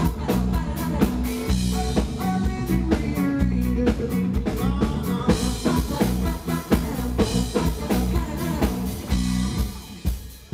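Live band playing a reggae groove, with drum kit, bass and guitar under singing voices, at full concert level. The music thins out sharply right at the end.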